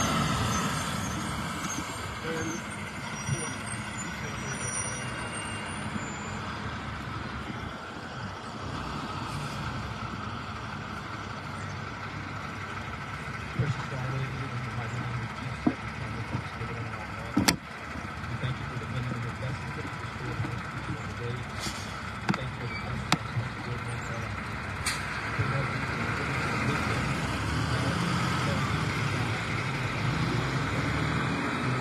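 Road traffic with a truck's engine running and pulling away, a steady low rumble that grows louder near the end. A few sharp clicks sound in the middle.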